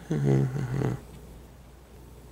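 A man's short, low-pitched laugh, over within about a second.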